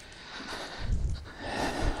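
A man's breathing close to the microphone: hissing breaths with low rumbles, loudest about a second in.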